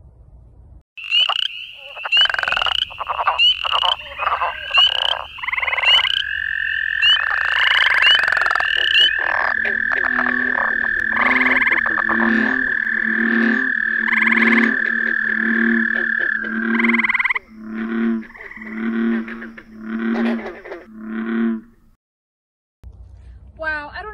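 Recorded calls of northern Wisconsin frogs and toads (wood frog, boreal chorus frog, spring peeper, northern leopard frog, American toad, gray treefrog, green frog and American bullfrog), played in the order of their breeding season. High repeated chirps come first, then a long steady trill takes over, and deep pulsed calls repeat through the second half.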